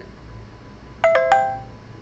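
A short electronic chime of three quick notes about a second in, the pitch dipping on the second note and rising on the third, ringing out for about half a second.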